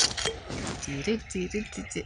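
Triple sec being poured from a bottle into a glass of ice, a soft hiss of liquid over about the first second, followed by a short low murmur of voices.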